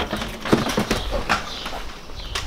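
Several footsteps on concrete steps and pavement, sharp knocks a fraction of a second apart.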